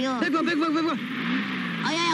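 A man's drawn-out, wavering vocal cry, followed by a lower, sliding voice sound, over the engine of a car approaching down a road.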